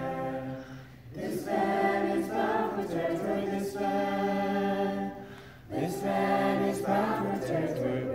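A small group of young people singing together a cappella, holding long notes, with two short breaks for breath: about a second in and after about five and a half seconds.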